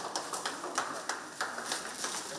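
Glossy foil wrapping paper crinkling and tearing in irregular sharp rustles as it is pulled off a large poster.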